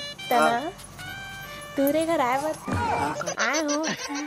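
Background music with steady held tones, under a person's voice in short phrases.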